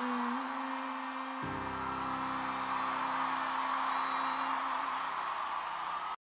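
Held notes from the band on stage, a steady mid tone joined by a deep sustained low chord about a second and a half in, over the continuous cheering of a large concert crowd.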